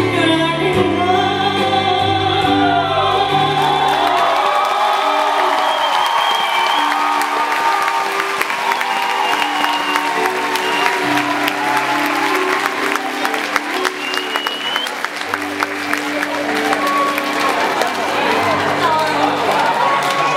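A woman's voice singing over sustained accompaniment chords; about five seconds in the singing ends and the audience applauds for several seconds while the accompaniment plays on to close the song.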